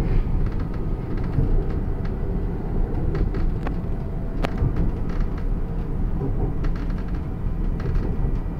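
Hyderabad Metro train running steadily along an elevated track, a continuous low rumble heard from inside the carriage, with a few faint clicks, the sharpest about halfway through.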